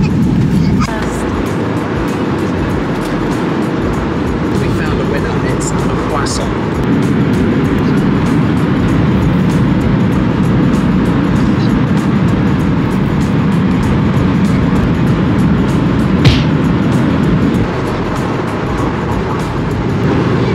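Steady roar of airliner cabin noise from the jet engines, growing louder about seven seconds in and easing back near the end.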